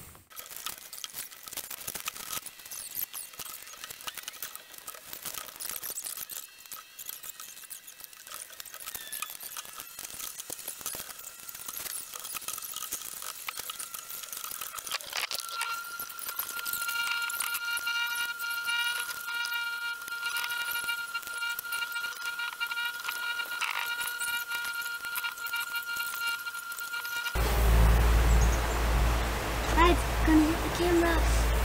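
Background music under an assembly sequence, with a steady held tone through its second half. Near the end it gives way to a loud rush of outdoor noise on the microphone.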